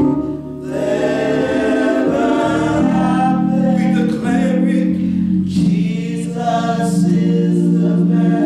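Gospel worship singing: voices sing a melody over sustained accompaniment chords that change every second or two.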